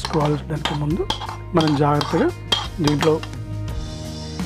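A metal spoon scraping and clinking against a bowl and a stainless-steel mixer-grinder jar as soaked moong dal is pushed into the jar. Background music with a sung melody repeats a phrase about once a second.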